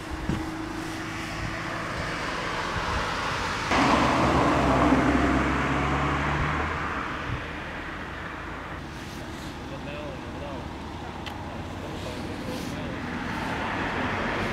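Roadside traffic noise: a car passes close by about four seconds in, its engine loudest for a few seconds before fading back into the steady hum of the road.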